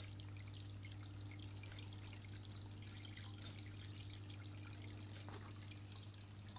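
Faint water trickling and dripping in an aquaponics fish tank and siphon grow bed, over a low steady hum.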